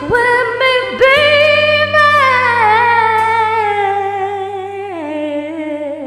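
A woman sings a long, wordless held note with vibrato that slowly falls in pitch and steps lower near the end, over a sustained chord from a karaoke backing track.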